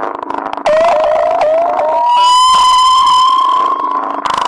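Synthesizer sound effects in an electronic soundtrack: a quick string of short rising glides, then one long siren-like held tone that slowly creeps up in pitch.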